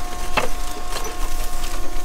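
Hands rummaging through a dumpster of plastic bags, crinkled packing paper and cardboard: crackling and rustling, with one sharp knock about half a second in, over a faint steady hum.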